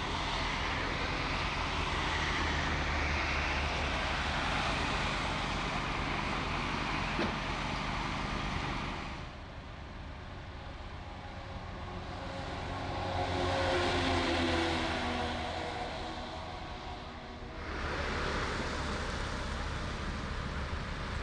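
Emergency vehicles driving along a motorway, with steady engine and tyre noise. About nine seconds in the sound changes abruptly to a heavy fire truck approaching. Its engine note swells to a peak and fades, then steady traffic noise returns.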